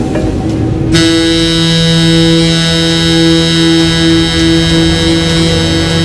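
A ship's horn sounding one long, steady blast, starting suddenly about a second in, over dramatic soundtrack music.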